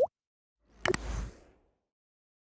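Logo-animation sound effects: a short pop rising in pitch right at the start, then, under a second in, a sharp click followed by a brief whooshing swell with a low rumble that fades out before halfway.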